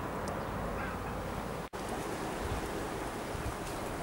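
Steady outdoor background noise with wind on the microphone, dropping out for an instant near the middle.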